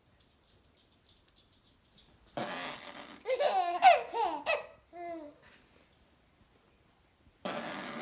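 A baby laughing in a string of short, high laughs, each set off by a brief breathy burst of noise about two and a half seconds in; another breathy burst comes near the end.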